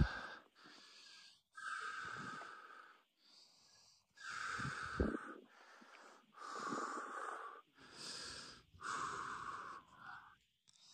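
A person breathing hard in and out, about five long breaths a second or two apart: the heavy breathing of a hiker climbing a steep trail.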